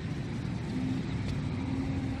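A vehicle engine running steadily, low and even, with a faint steady hum joining in a little under a second in.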